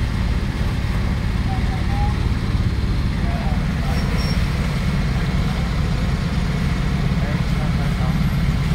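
Heavy-haulage tractor unit's big diesel engine idling with a steady low rumble.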